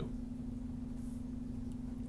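Steady low electrical hum with faint background noise in the recording.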